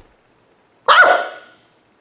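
A single dog bark about a second in, sharp at the start and fading within about half a second.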